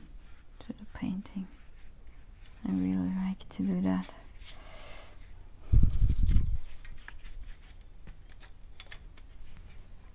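A person's voice making a few short murmurs held at a steady pitch, then a loud, low, dull thump about six seconds in, with faint brush and handling noises between.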